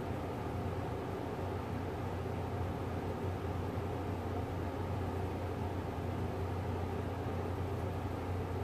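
Steady low hum with a hiss over it, unchanging throughout.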